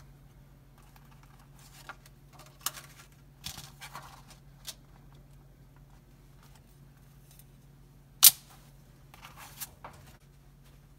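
Handling noises from a plastic stencil frame and stencil sheets being moved and set down on a table: scattered light taps and rustles, with one sharp click about eight seconds in. A faint steady low hum runs underneath.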